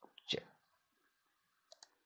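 Faint computer mouse clicks: one click early on and a quick pair near the end, made while the lecture slides are being advanced.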